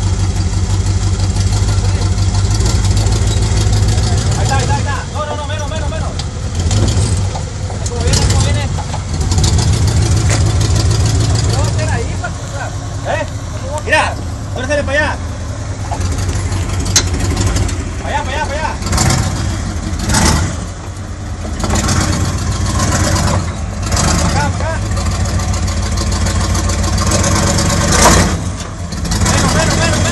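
V8 engine of a Jeep Wrangler YJ running at low revs as it crawls over rock, swelling and dipping with the throttle, with people talking over it.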